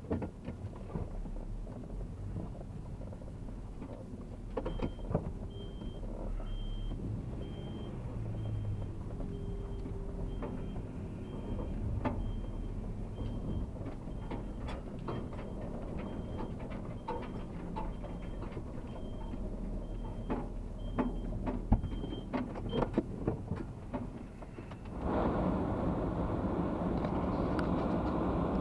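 A vehicle's engine idling, heard from inside the cab, with the turn-signal indicator ticking steadily through most of the turn. Near the end the engine and road noise grow louder as the vehicle pulls away.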